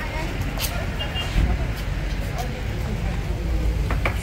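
Busy street ambience: indistinct chatter of people close by over a steady low noise of road traffic.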